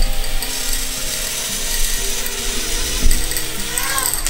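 Micro quadcopter's four small motors and propellers spinning up while the drone stays on the floor without lifting off: a dense, steady buzz made of several whining pitches. A sharp knock about three seconds in.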